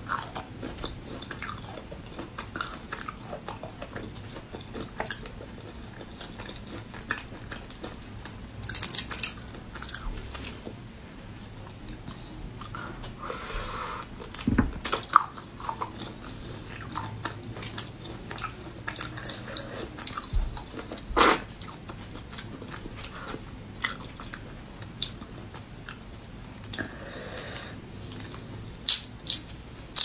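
Close-miked eating of raw marinated shrimp: shells cracking and peeling under the fingers, with wet chewing and sucking. The sounds come as scattered clicks and short slurps, with a few louder cracks about halfway through and again near the end.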